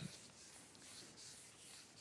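Near silence: faint room tone in a pause between words.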